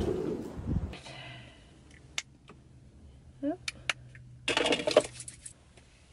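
Mostly quiet with a faint low hum, broken by a few sharp light clinks about two seconds in and again around three and a half to four seconds, and a short rush of noise lasting about a second near the end. A low rumble fills the first second.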